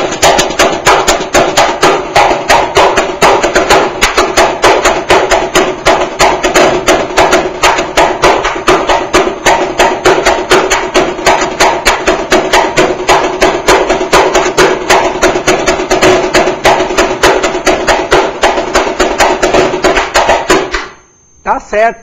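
Samba caixa (snare drum) played solo with sticks in a samba school bateria's signature caixa beat: a fast, unbroken run of sharp strokes, very loud from the microphones held close to the drumhead, stopping about a second before the end.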